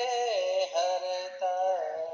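A voice singing a Hindi devotional bhajan to Hanuman with musical accompaniment, in held notes that bend down in pitch, with two short breaks between phrases.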